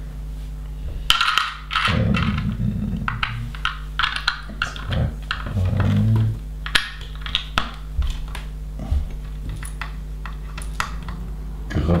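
Plastic LEGO bricks clicking and rattling as loose pieces are picked out of a pile on the table and pressed onto a model, a run of sharp, irregular clicks.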